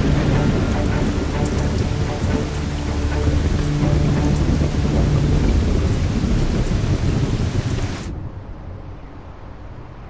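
A thunderstorm: heavy rain falling on the sea with deep rumbling thunder, a loud dense wash of noise. About eight seconds in it cuts off abruptly, leaving a much quieter, duller background.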